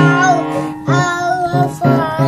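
A young child singing a wavering tune while a few single notes are played on a small instrument.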